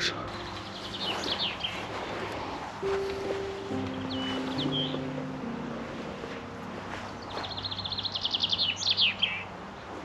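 A small songbird singing short phrases, with a louder, rapid trill near the end, over soft background music with low held notes.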